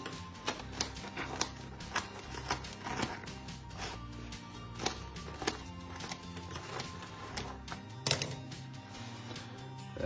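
Irregular sharp crunching clicks of the crisp crust of a pan-baked pizza being cut, with the loudest crack about eight seconds in, over background music.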